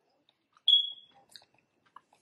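A single short high-pitched tone about two-thirds of a second in, fading out within about half a second, followed by faint mouth clicks of chewing.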